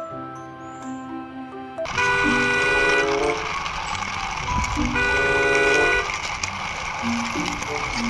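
A short melodic music cue, then a sudden louder section in which a horn-like toot of held tones sounds twice, a few seconds apart, over a steady rumbling noise.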